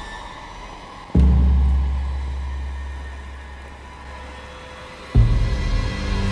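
Tense thriller film-score music: a deep low hit about a second in that rings on and slowly fades, then another sudden low hit near the end with a steady deep tone.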